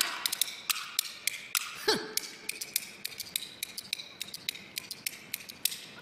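Kuaiban bamboo clappers, the large two-board clapper and the small multi-slat clapper, clacking in a quick, uneven rhythm that grows quieter toward the end.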